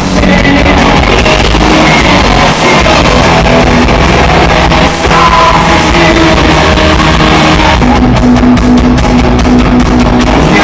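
Live rock band playing loud, with electric guitars and drums.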